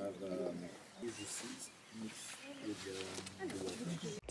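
Faint, indistinct talking among a few women, coming and going in short stretches.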